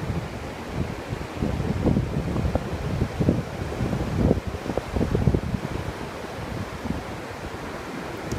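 Ocean surf washing on a beach, with wind buffeting the microphone in irregular gusts.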